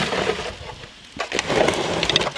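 Crackly rustling and crinkling of plastic nursery pots and herb leaves being handled, easing off about halfway and picking up again near the end.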